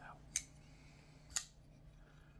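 Two sharp metallic clicks about a second apart from a titanium-handled liner-lock folding knife being worked open by hand.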